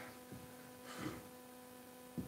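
A very quiet pause filled by a faint, steady electrical hum from the audio setup, with one soft short noise about a second in.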